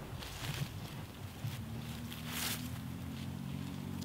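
Faint soft swishes and rustling as kali sticks are swung and feet shift over dry leaves, the clearest swish about two and a half seconds in. A low steady drone of a distant engine comes in about halfway.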